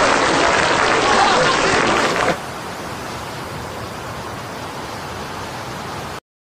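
Studio audience laughing and clapping, cut off abruptly about two seconds in, leaving a quieter steady hiss.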